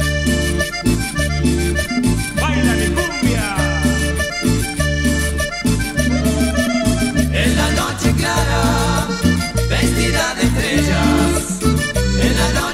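Instrumental introduction of a cumbia song. An accordion leads the melody over a steady, repeating bass line and percussion, with a quick falling run a few seconds in and busier playing from about halfway on.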